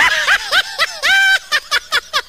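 High-pitched laughter in quick ha-ha bursts, about five a second, with one longer held note just after a second in.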